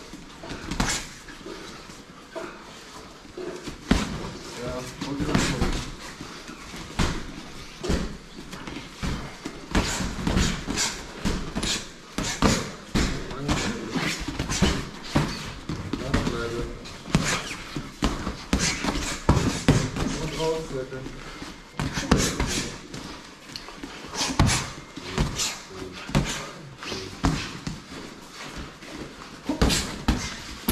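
Punches from padded boxing gloves landing during sparring: irregular sharp smacks, often several in quick succession, on gloves and body.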